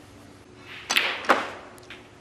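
Two sharp clicks of snooker balls about 0.4 s apart: the cue tip striking the cue ball, then the cue ball hitting a red. A faint click follows near the end.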